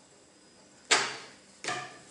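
Two sharp metallic clacks from a steel rule knocking against the tabletop: the louder one about a second in, and a second near the end that rings briefly.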